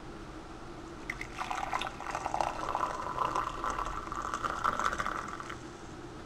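Hot coffee poured from a French press into a ceramic mug: a steady splashing stream that starts about a second in and stops shortly before the end.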